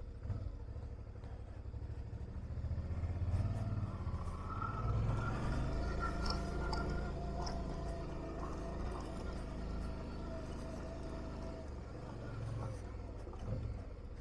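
Suzuki V-Strom motorcycle's V-twin engine pulling steadily at low revs up a steep, rocky dirt track, a little louder in the middle of the climb, with faint clicks of stones under the tyres.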